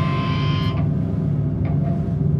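Live punk band's guitars and cymbals ringing out and cutting off about two-thirds of a second in, leaving a steady low hum from the amplifiers.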